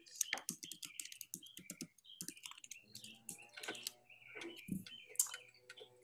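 Computer keyboard typing: quick, irregular key clicks, faint over a video-call microphone.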